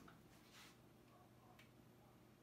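Near silence: room tone with two faint clicks of a small charger plug being handled, a soft one about half a second in and a thin, higher one about a second and a half in.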